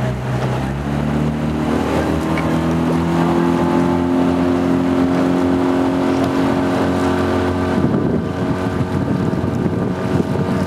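Outboard motor of a small boat running steadily, its pitch stepping up about a second in as it gathers speed, then holding.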